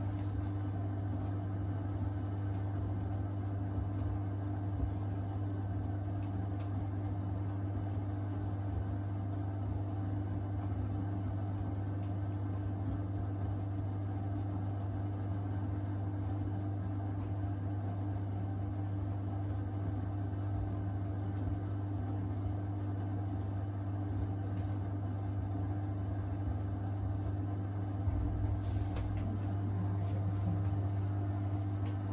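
Miele W4449 front-loading washing machine running its wash, the drum tumbling the load through water with a steady motor hum. A brief louder rumble comes near the end.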